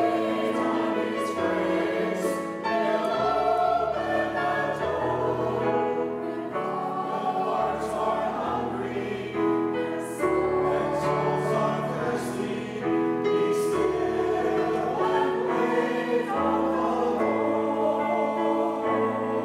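A small mixed church choir singing together in held chords, with a low instrumental accompaniment underneath.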